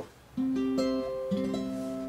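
Taylor acoustic guitar: after a short pause, several single notes are plucked one after another and left ringing together, picking out notes of a C major chord shape.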